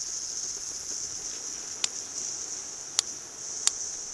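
A lit backpacking canister stove burner hissing steadily. Three sharp clicks sound about a second apart from a piezo igniter on a second canister stove, which fails to light because its butane-propane fuel is too cold.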